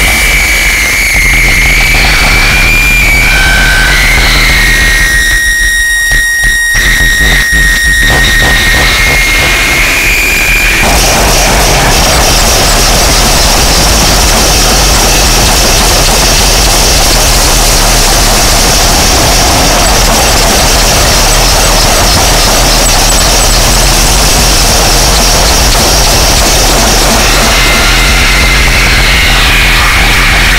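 Experimental harsh noise / power electronics track, loud and distorted. For the first ten seconds or so, high steady squealing tones sit over a churning noise, which thins out briefly near the middle. From about 11 s on it becomes a thick, unbroken wall of noise.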